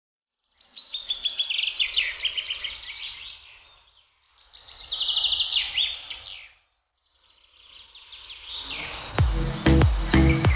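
Songbird singing in three phrases of rapid, high chirping notes, each swelling and fading. About nine seconds in, loud music with a low beat comes in over it.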